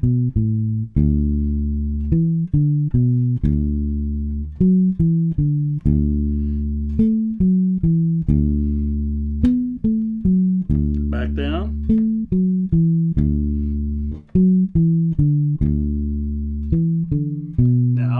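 Fender electric bass playing a major pentatonic exercise slowly, one plucked note at a time, each note held, in short patterns that climb up the neck.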